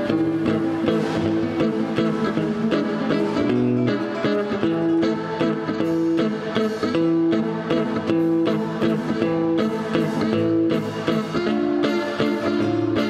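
Several acoustic guitars playing a tune together, with melody notes held over plucked chords.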